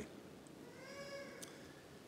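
A faint, high-pitched cry about a second long, rising and then falling in pitch, with a brief faint click near its end.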